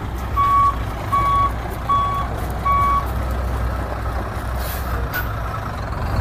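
2000 International 2574 dump truck backing up: its back-up alarm beeps four times, a little faster than once a second, over the steady low run of its Cummins diesel, and stops about three seconds in. A brief hiss of air follows near the end.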